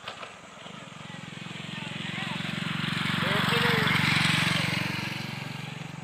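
A motorcycle passing on the road: its engine and tyre noise grow louder for about three seconds, then begin to fade near the end.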